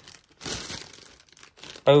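Clear plastic polybag crinkling as a bagged fleece jacket is handled and its tag lifted, with a couple of soft rustles in the first second and a half.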